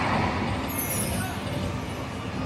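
88 Fortunes slot machine at the end of a losing spin: a short swell of sound as the reels settle, a brief high electronic shimmer about a second in, then a steady low hum.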